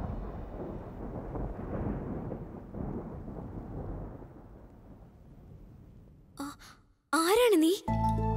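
A low rumbling dramatic sound effect fading away over about six seconds. Near the end comes a short, loud, wavering vocal sound.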